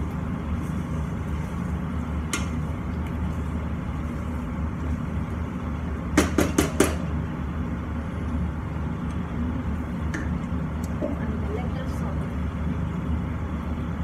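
Wooden spatula stirring pasta in pesto sauce in a steel frying pan, with a quick run of four sharp taps against the pan about six seconds in, over a steady low hum.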